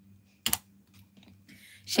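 A pause holding one sharp click about half a second in, followed by a few faint clicks.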